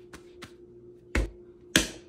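A ball of fresh pasta dough slapped twice onto a wooden worktop: two sharp, heavy thuds about half a second apart in the second half, after a couple of faint soft pats.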